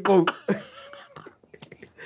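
A man's voice speaks briefly, then trails off into a soft, breathy held sound, followed by a quieter lull of about a second with a few faint clicks.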